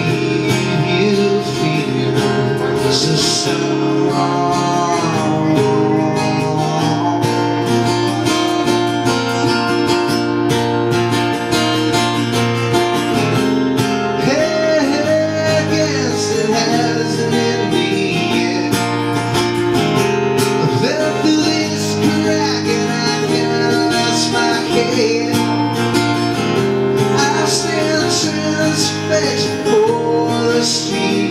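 An acoustic guitar strummed in steady chords, with a voice singing over it: a song performed to guitar.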